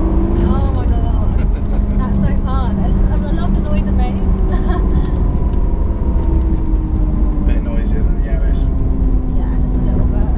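Lamborghini Aventador SV's V12 engine running at steady low revs, heard inside the cabin over heavy low road rumble, its pitch drifting only slightly as the car moves slowly.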